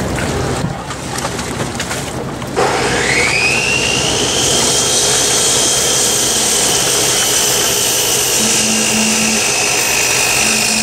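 A machine starts up about two and a half seconds in, its whine rising quickly and then holding steady and high.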